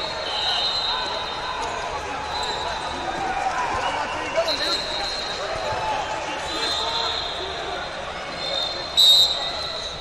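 Busy wrestling-hall ambience: a steady murmur of crowd voices in a large echoing room, cut by several short referee whistle blasts from the mats, the loudest and sharpest one about nine seconds in.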